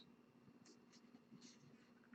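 Near silence, with a few faint, short rustles of trading cards being handled.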